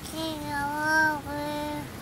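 A young child singing two drawn-out notes: the first about a second long, the second shorter and a little lower.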